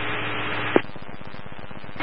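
Police scanner radio hiss between transmissions over a faint steady hum, with a single click about three quarters of a second in, after which the hiss is quieter.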